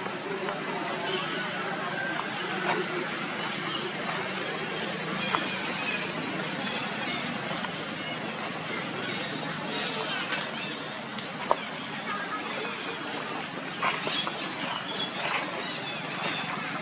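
Steady outdoor background noise with indistinct voices, broken by a few sharp clicks.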